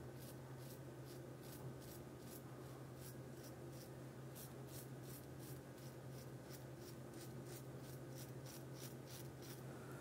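Double-edge safety razor scraping through lathered stubble in short, quick strokes, about three a second, faint and scratchy.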